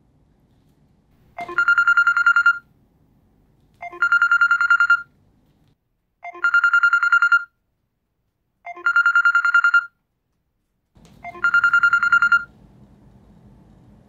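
Mobile phone ringtone: five electronic trilling rings, each about a second long, coming about every two and a half seconds.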